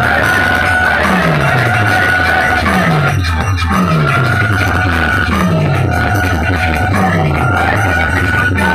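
Loud dance music played through a DJ sound-box rig of horn loudspeakers, with a falling bass note repeating about every second under a held high tone.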